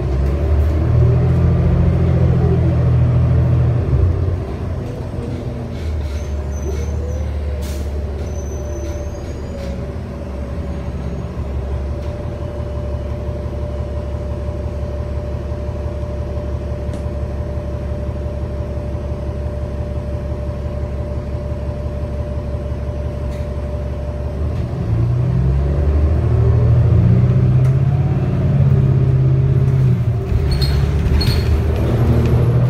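Inside the cabin of a 2019 New Flyer XD35 bus under way: its Cummins L9 diesel engine and Allison B400R automatic transmission run with a steady rumble. The engine pulls harder near the start and again near the end, with whines rising and falling, and settles to a steadier, quieter cruise with a faint steady whine in between.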